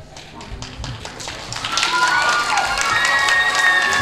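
An audience applauding, the clapping swelling about a second and a half in, with music and some long held notes over it.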